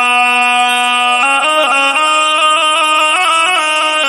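Instrumental music: a single reedy lead instrument holds one note for about the first second, then plays a run of short notes that step up and down.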